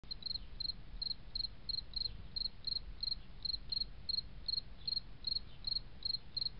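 A cricket chirping at a steady, regular pace of about three short chirps a second, over a faint low background hum.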